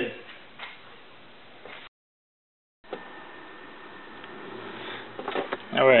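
Faint steady background hiss, broken by about a second of total silence at an edit cut; a man's voice starts near the end.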